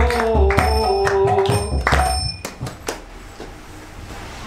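Devotional song: one voice holding long sung notes over drum beats and ringing metallic strikes. The music ends about two and a half seconds in, with a last couple of strikes, leaving room sound.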